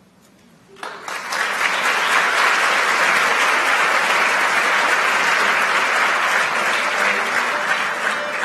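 Large audience applauding in an auditorium. It starts about a second in and quickly swells to a steady level.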